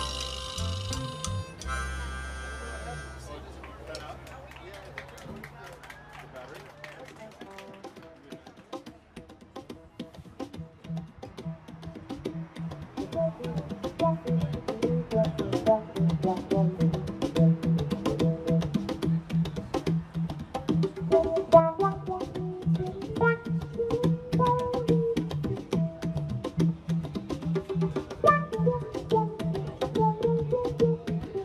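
Live band's final chord ringing out and fading over the first several seconds; after a short lull the band starts a new tune about ten seconds in, with a repeating bass line and hand-drum (conga) strokes building steadily.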